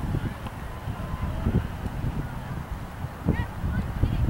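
Wind buffeting the microphone in a steady low rumble, with a few faint honking calls of geese, the clearest a short rising call just after three seconds.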